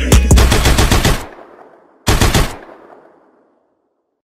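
Automatic gunfire sound effect at the end of a hip-hop track. A long rapid burst plays over the last of the beat and cuts off about a second in, echoing away. A second short burst comes about two seconds in and fades out.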